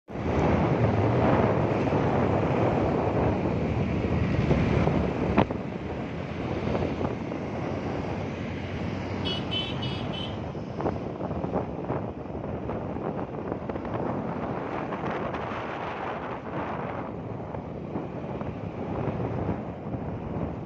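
Wind buffeting the microphone over the running noise of a moving vehicle, louder for the first five seconds and then steadier and quieter after a sharp click. About nine seconds in there is a short run of high, rapidly repeated beeps or chirps lasting about a second.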